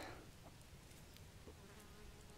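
Near silence, with the faint buzz of a flying insect coming in near the end.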